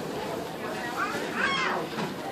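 A short, high-pitched vocal cry about a second in, its pitch rising and falling, over faint background chatter.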